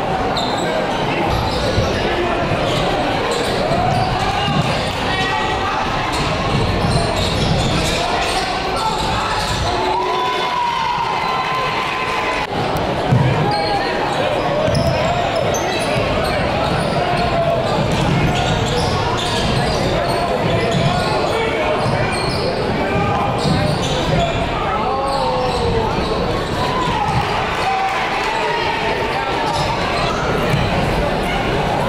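Basketball being dribbled on a hardwood gym court, with a steady mix of voices from players and the crowd.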